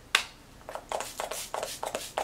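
MAC Fix+ setting spray misted from its pump bottle onto the face: one sharp spritz just after the start, then a quick series of shorter spritzes, several a second.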